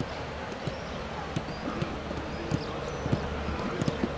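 Irregular soft thuds of several footballers' feet running on a grass pitch, mixed with occasional touches of a football.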